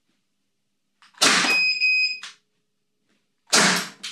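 Two shots from an 11 mm CO2 airsoft pistol, about two seconds apart, each a sharp gas discharge; the first is followed by a steady electronic beep.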